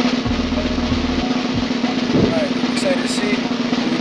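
A sustained snare drum roll, held at an even level for about four seconds and cutting off abruptly.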